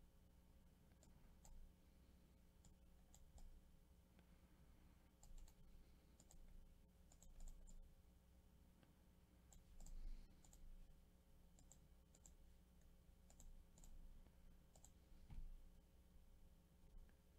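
Near silence: faint, irregular computer mouse clicks over a low, steady electrical hum.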